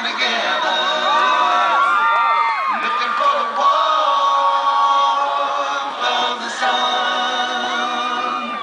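A high school graduating class singing their class song together as a large unaccompanied choir, many voices holding and moving between notes.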